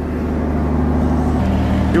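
Steady low drone of the ferry's engines running at the pier, shifting pitch about one and a half seconds in, under an even rushing hiss from a faulty camera microphone that makes the track sound windy.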